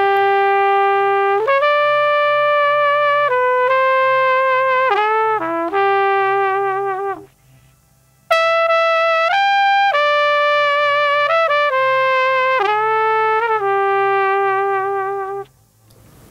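Solo flugelhorn track of a pop recording, soloed on the mixing desk, playing a slow melody of long held notes in two phrases with a break of about a second in the middle.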